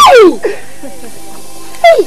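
Two loud cries, each sliding sharply down in pitch, one at the start and one near the end, over a soft steady music bed.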